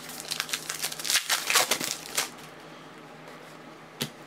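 Foil trading-card pack wrapper crinkling in the hands as it is opened: a quick run of crackles for about two seconds, then it goes quieter.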